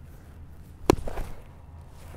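A single sharp pop about a second in, a baseball landing in a catcher's mitt, followed by a few faint ticks as he spins his feet into the transfer.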